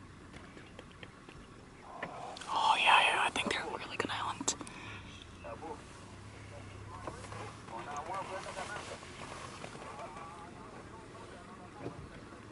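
Hushed whispering voices, loudest about two to five seconds in, with softer whispering again around eight seconds.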